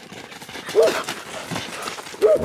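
A wolf and a dog running close past at play, their feet thudding on dirt and brushing through grass and brush in a quick patter.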